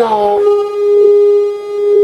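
Microphone feedback through a PA system: a loud, steady howl at one unwavering pitch. It builds out of the speaker's voice about half a second in and holds for about two seconds.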